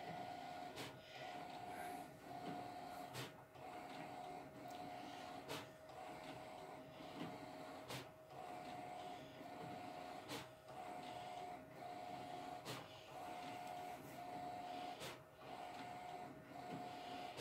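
Faint HP large-format inkjet printer printing. A steady whirring tone from the printhead passes stops and starts in a regular cycle, broken by a sharp click a little over once a second as the paper steps ahead for the next swath.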